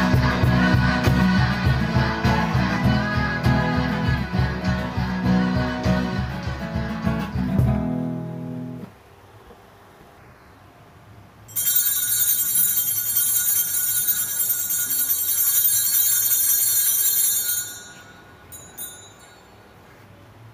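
Recorded background music with a steady beat, which ends about nine seconds in. After a short lull, a second, bright ringing stretch of music plays for about six seconds and stops.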